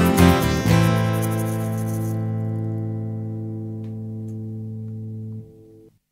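Acoustic guitar strummed a few last times, then a final chord left to ring and fade slowly for about four and a half seconds before it is damped, ending the song.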